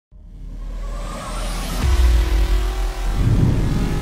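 Logo sting made of sound-design music: a rising whoosh leads into a deep hit about two seconds in, and a second deep hit follows about a second later, each held by low tones.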